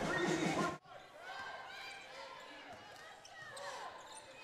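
Arena crowd noise after a made three-pointer, cut off abruptly just under a second in. It gives way to a quiet basketball court: faint sneaker squeaks on hardwood and a ball being dribbled.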